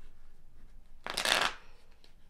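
A deck of tarot cards being shuffled by hand: one brief, loud riffle of cards about a second in.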